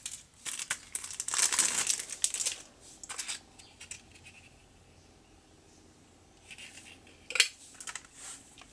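Plastic wrapping crinkling as a CD case is unwrapped and handled, in bursts over the first three seconds, then a quiet spell, and a sharp click near the end.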